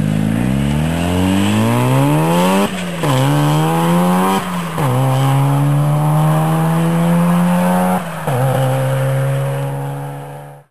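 Turbocharged Mazda RX-7 FD3S 13B-REW twin-rotor rotary engine, converted to a single T70 turbo, accelerating hard through the gears. The revs climb, fall at an upshift about three seconds in, climb again, fall at another shift about four and a half seconds in, then hold a high, nearly steady note with one more shift near eight seconds.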